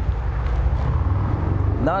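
Steady low outdoor rumble, like city traffic or wind on the microphone, with a man's voice starting near the end.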